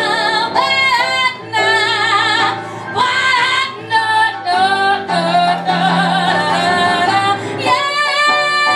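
A woman singing live with strong vibrato over piano accompaniment, holding one long note through the second half.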